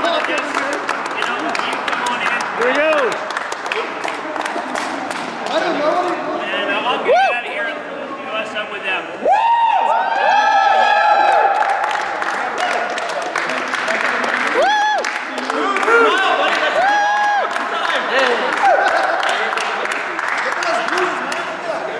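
Group applause with cheering. Dense clapping in the first several seconds thins out, while several whoops and shouts go up, the longest drawn out for about two seconds around the middle.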